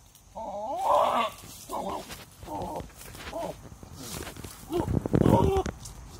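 Goats bleating: a run of short, wavering bleats, with a louder, deeper and rougher call about five seconds in.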